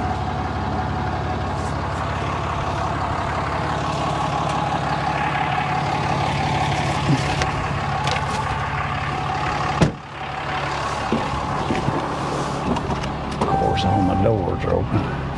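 A truck engine idling steadily, with one sharp knock about ten seconds in.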